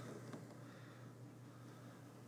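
Near silence: room tone with a low steady hum.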